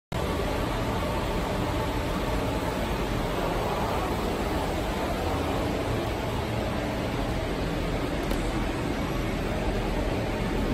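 Steady, even mechanical noise of powder-packing machinery running, a low hum under a rushing hiss with no distinct beat.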